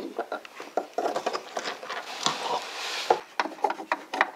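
Scattered small taps, clicks and rubbing as Lego minifigures on strings are handled and moved against a painted model set, with a longer scraping rub about two to three seconds in.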